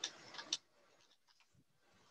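A few faint computer keyboard clicks in the first half second, then near silence.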